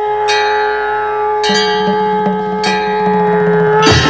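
A bell struck four times, a little more than a second apart, each stroke ringing on over a steady held drone, as part of devotional theme music.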